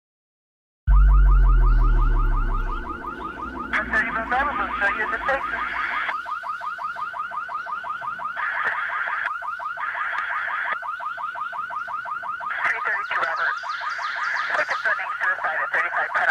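Film soundtrack sound design: a deep low boom about a second in, fading over about two seconds, under a fast, steady pulsing chirr that carries on through the rest, with higher pulsing layers coming and going.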